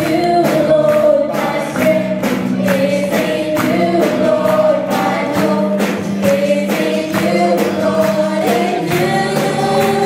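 Live praise and worship music: a band playing while many voices sing together, over a steady beat of about two strikes a second.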